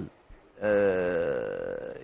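A brief pause, then a man's long drawn-out hesitation sound: one vowel held for over a second, its pitch slowly falling.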